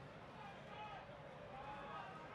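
Faint, distant shouted voices from the people around the cage, over low arena background noise.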